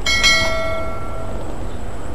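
A single ding from a notification-bell sound effect, rung as an on-screen subscribe button turns to 'subscribed'. The bell is struck once at the start and rings out, fading over about a second and a half, over steady background noise.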